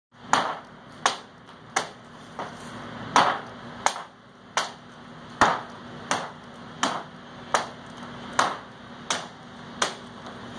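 A hatchet chopping into a wooden board in a steady rhythm, about fourteen strokes, one every 0.7 seconds or so, as the board's face is hand-hewn into log siding.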